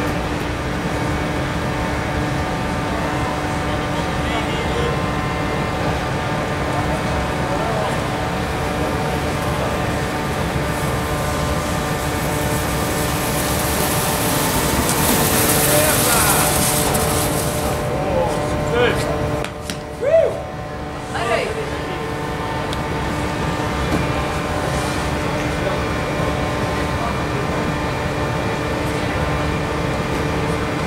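Indoor ski-hall ambience: a steady machine hum with several fixed tones over a low rumble, with people's voices in the background. About halfway through, a hiss swells and fades as a snow tube slides down the snow, followed by a few short voices calling out.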